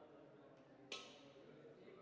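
Faint, indistinct murmur of people talking, with one sharp click about a second in.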